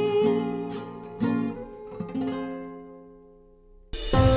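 Acoustic guitar strumming the closing chords of a song, with a held sung note ending in the first half second; the last chord rings out and fades away to near silence.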